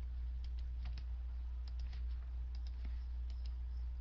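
Scattered light computer clicks in small groups, over a steady low electrical hum.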